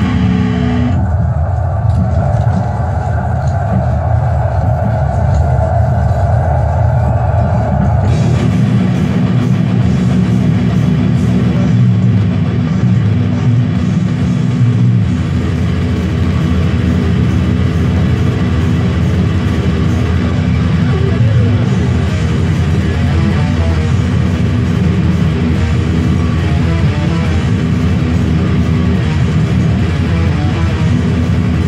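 Distorted electric guitar playing a fast-picked death metal riff. The tone is narrower and duller at first and turns fuller and brighter about eight seconds in.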